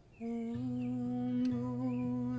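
A voice humming one long held note starts a moment in, joined about half a second later by a second, lower held tone; faint bird chirps sound above it.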